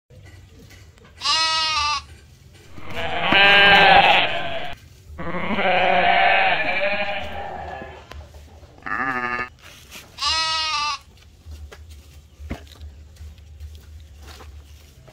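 Livestock bleating in five loud calls: a short one about a second in, two long ones between about three and eight seconds, and two short ones near nine and ten seconds.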